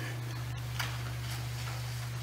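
Steady low electrical hum from the room's audio system, with a couple of faint clicks about half a second and a second in.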